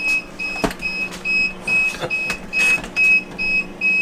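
Power inverter's low-battery alarm beeping steadily, about two short high beeps a second, over a steady low hum: the 12 V battery feeding it has run down. A couple of handling knocks as the camera is turned.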